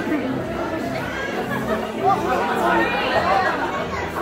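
Several voices chattering at once, overlapping, with music playing underneath.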